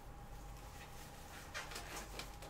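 Faint rustling of trading-card packs and cards being handled, a brief crinkle from about one and a half seconds in.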